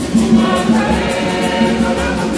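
A choir of women singing a gospel-style hymn together, with hand clapping keeping a steady beat.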